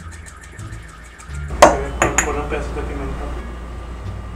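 Salt being shaken into a rice cooker's pot with light rapid ticking, then a sharp knock of cookware about a second and a half in, followed by a couple of smaller clatters over a low hum.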